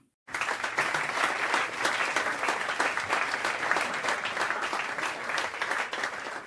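Audience applauding, beginning a moment after the start and thinning out near the end.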